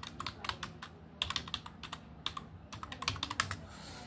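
Typing on a computer keyboard: quick bursts of keystrokes with short pauses between them.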